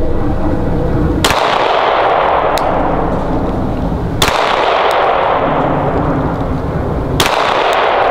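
Three pistol shots about three seconds apart, fired to check a red dot sight's zero, each followed by a long echo that fades before the next shot.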